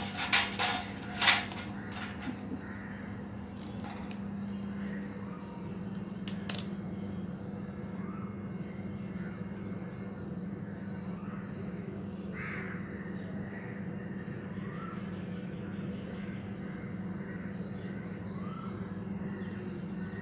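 A few sharp plastic clicks as a bag clip is unclipped from a hanging cotton-cloth pouch, then a steady low hum with faint bird calls scattered over it.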